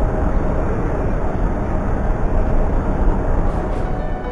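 Steady low rumbling background noise of a busy indoor space, with a faint steady tone in it and a couple of light clicks near the end.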